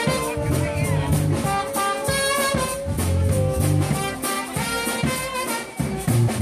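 Live brass marching band playing an upbeat tune: trumpets and trombones carry the melody over a low, repeating bass line and a steady drum beat.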